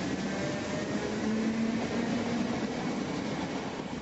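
A DART electric commuter train running past a platform at speed: a steady rushing noise of wheels on rails, with a faint low hum partway through.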